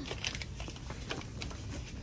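Faint store-aisle background noise with a few light clicks and rustles of handling.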